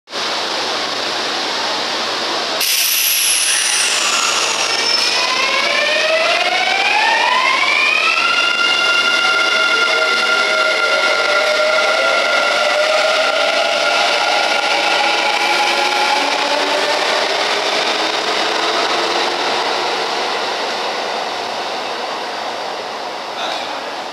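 Kintetsu 9020 series electric train pulling away from an underground platform. About two and a half seconds in, its VVVF inverter drive starts up with several whines rising in pitch together, which level off into steady tones as the train gathers speed and then slowly fade as it leaves.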